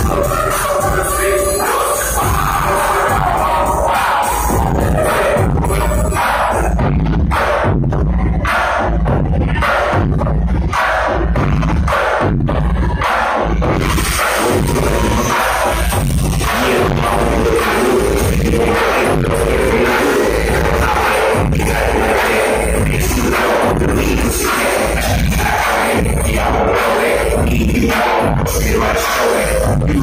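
Loud dance music played by a DJ from a laptop through a PA system, with a steady beat of about two kicks a second. From about six seconds in, the high end drops away for several seconds, then comes back in full around fourteen seconds.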